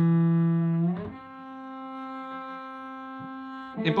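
Cello played slowly with the bow: a loud sustained low note for about a second, then a change to a slightly higher, softer note held for nearly three seconds.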